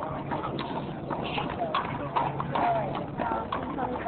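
Indistinct voices talking over a series of irregular sharp knocks, with a steady low hum underneath.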